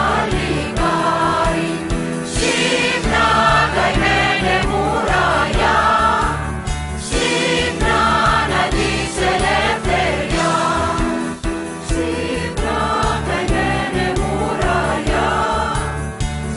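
Greek song: voices singing over instrumental accompaniment with a steady low beat.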